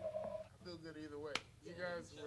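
A band's final held note, a steady tone with faint regular ticks, ends about half a second in. It gives way to relaxed talk between band members, with one sharp click partway through.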